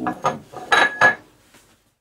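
A ceramic plate set down on a hard kitchen surface: two sharp clinks about a second in, with a brief ringing tone.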